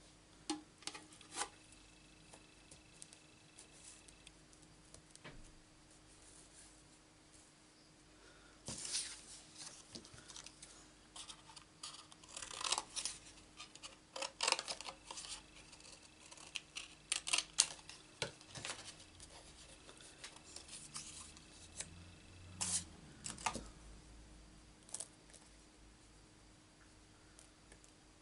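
Cardstock rustling and sliding, with irregular small clicks as thin metal cutting dies and paper pieces are handled and laid on an acrylic cutting plate. The handling is heaviest through the middle and tails off near the end.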